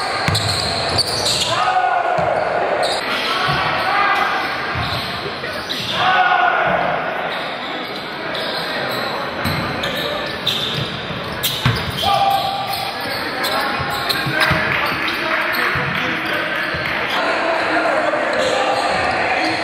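A basketball bouncing on a hardwood gym floor during play, in a series of short thuds, with players and onlookers shouting and chattering in a large gym hall. The voices rise in short bursts a few times.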